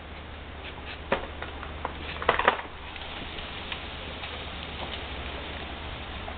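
A small dog scuffling and pawing in snow under a bench, soft patter with a few sharper scrapes around one to two and a half seconds in, over a steady low hum.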